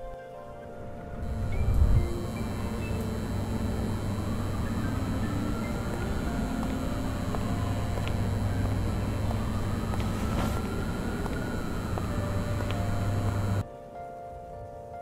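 Steady low ambient rumble with a hum under it, swelling about two seconds in, and a faint tone that slowly rises and falls twice. It cuts off abruptly just before the end.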